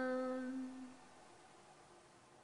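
A voice holding one long, steady chanted or hummed note that fades out about a second in, leaving faint room tone.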